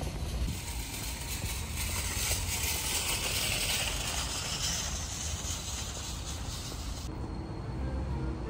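Outdoor parking-lot ambience: a low wind rumble on the microphone under a hiss of passing traffic that swells in the middle and cuts off suddenly about seven seconds in.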